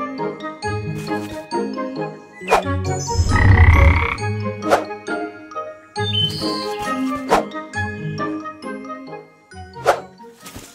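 Light cartoon background music with plinking notes and sharp percussive hits every couple of seconds. About three seconds in, a loud, low cartoon sound effect lasts about a second over the music.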